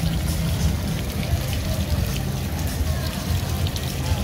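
Water from a tiered bowl fountain splashing and trickling down into its pool: a steady, unbroken wash of noise with a low rumble beneath it.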